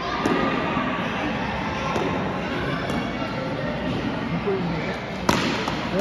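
Spectators' chatter in a hall, then a single sharp crack of a cricket bat striking the ball about five seconds in.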